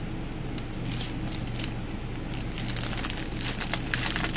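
A bag of craft gel embellishments being opened by hand, its packaging crinkling and crackling, busier in the second half.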